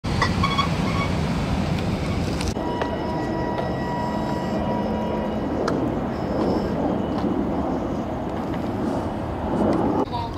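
Lowrider car engines running, a steady rumble, with an abrupt change in the sound about two and a half seconds in.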